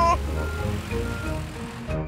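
Cartoon car engine puttering low as the car drives off and fades away, under a short, soft musical interlude of a few gentle notes.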